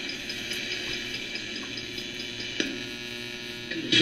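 RadioShack 12-150 radio sweeping as a ghost box through a guitar amp and pedal: a steady hum with hiss and a faint, rapid ticking, and one brief click about two and a half seconds in. It sounds bad, with something wrong in the setup that the owner cannot find.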